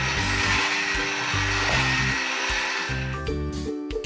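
Toy electronic cash register playing a steady hissing sound effect after one of its buttons is pressed; the hiss stops a little after three seconds in. Children's background music plays under it.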